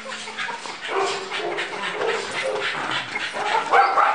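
A dog barking and yipping in short calls, loudest near the end.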